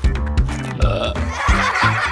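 A cartoon burp sound effect from a baby character, over upbeat background music with a steady beat.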